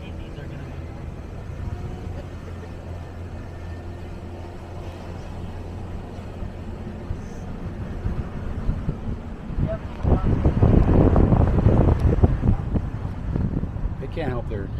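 Steady low drone of a Ram 2500 pickup's Cummins diesel and its tyres driving up a mountain road, heard through an open window. From about ten seconds in, loud wind buffets the microphone for a few seconds.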